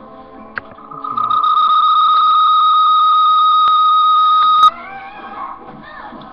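Microphone feedback: a loud, steady high-pitched squeal that builds up about a second in, holds one pitch for about three and a half seconds, then cuts off suddenly with a click.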